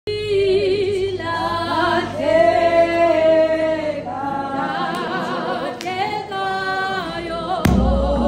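A group of voices sings a Xhosa hymn unaccompanied. Near the end a loud low thump starts a beat under the singing.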